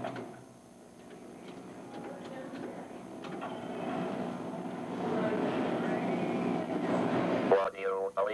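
Indistinct murmur and noise on an old film soundtrack, slowly growing louder. Just before the end, the Votrax voice synthesizer starts to speak.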